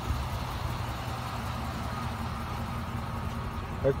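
Chevy 2500 pickup's engine idling, a steady low rumble.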